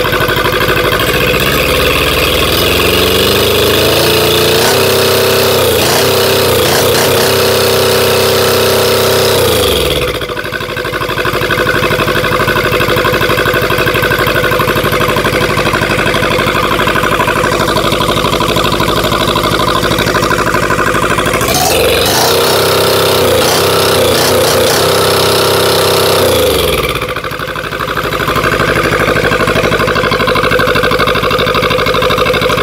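Kubota Z482 two-cylinder diesel engine running. It is revved up over a few seconds and held at high speed, then dropped back to idle. Later it is revved up once more and held, then settles back to idle.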